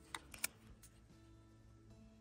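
A few soft clicks in the first half second as paper stickers are handled and pressed onto a planner page, over faint background music.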